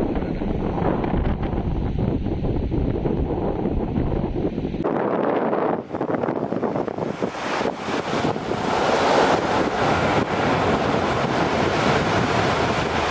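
Wind buffeting the microphone with a low rumble; about five seconds in it gives way abruptly to the steady hiss of sea surf washing in, which grows louder towards the end.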